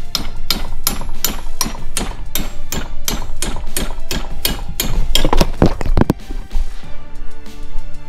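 A hand hammer repeatedly striking metal held in a bench vise: a fast, even run of about three sharp blows a second that stops about six seconds in.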